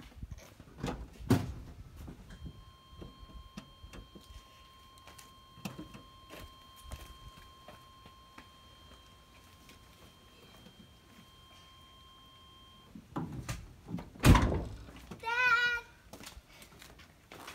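A steady electronic warning tone from a 1994 GMC truck sounds for about ten seconds while the headlights are switched on, with scattered clicks. A loud thump comes near the end.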